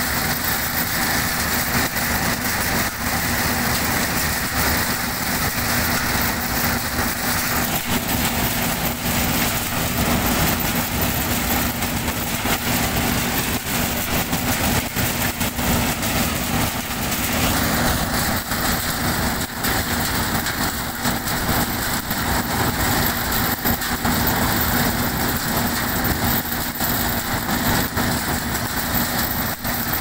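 Chickpea threshing machine running steadily: a loud, continuous mechanical din with a steady low hum under it.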